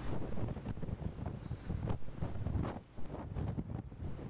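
Wind buffeting the camera microphone on a ship's deck, an uneven, gusty low rumble that dips briefly near the end.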